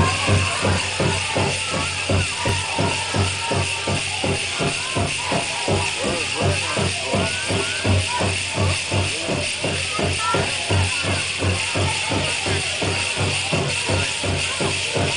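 Powwow drum group singing together over a steady, even beat on a big drum, accompanying a jingle dress dance song.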